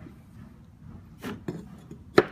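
A few light clicks and knocks from small steel plates being handled and set down, with a sharper click near the end.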